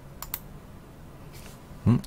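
Two quick computer keyboard key clicks, followed by a faint brief rustle, as a web address is entered into a spreadsheet cell.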